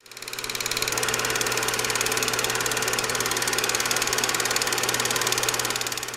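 Film projector sound effect: a steady, very rapid mechanical clatter over a low motor hum, starting abruptly.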